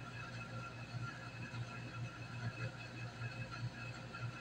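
Quiet room tone with a steady low hum and no distinct sounds.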